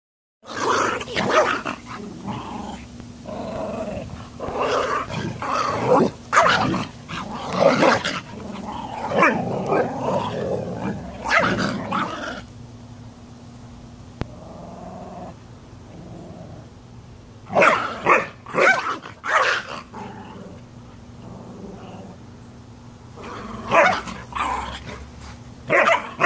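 A Yorkshire terrier and a husky growling and barking at each other as they fight. A dense run of growls and barks lasts about twelve seconds, then after a lull come two shorter bouts.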